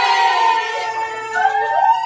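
A group of young voices cheering together in long, loud held whoops, one voice sliding up in pitch near the end.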